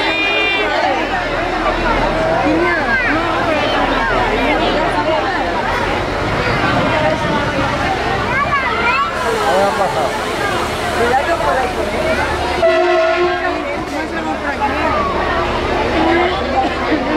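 Crowd chattering beside a train standing at a station platform over a low steady hum, with one train horn blast of about a second near the end.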